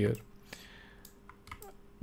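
A few faint, scattered clicks from computer input devices (keys and mouse buttons) during a pause in speech, over a faint steady hum.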